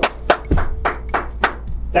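Hands clapping in quick, slightly uneven claps, about six a second.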